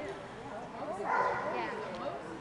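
A dog gives a short, high-pitched bark about a second in, over steady crowd chatter.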